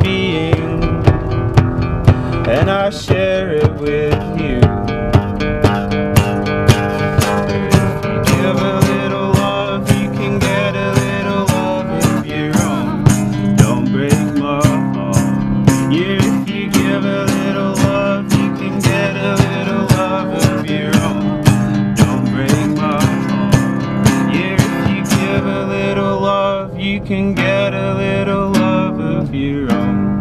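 Acoustic band playing an instrumental passage: strummed acoustic guitar over a steady percussive beat, the beat dropping out near the end.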